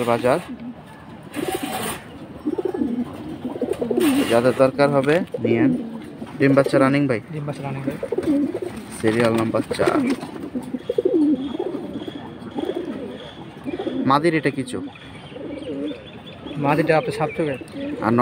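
Domestic pigeons cooing, several low coos repeating and overlapping every second or two.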